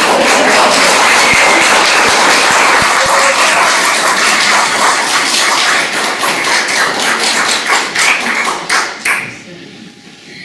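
Audience applauding, a dense run of clapping that thins out to a few scattered claps and dies away near the end.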